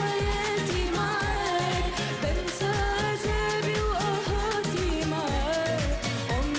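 A woman's voice singing a pop song over a band backing with a steady, repeating low beat.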